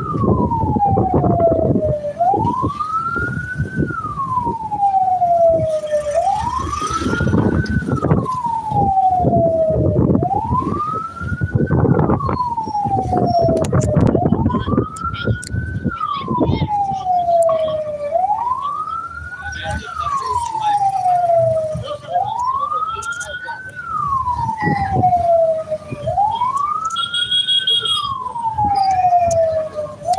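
A siren wailing, slowly rising and falling about once every four seconds, over the rumble of a moving vehicle.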